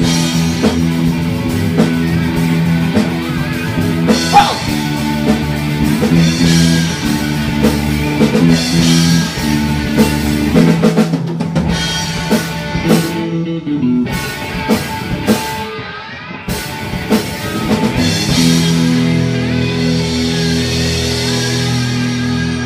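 Live rock band playing an instrumental passage on electric guitar, bass and drum kit. The sound thins out to a sparser stretch with less bass around the middle, and the full band comes back in about 18 seconds in.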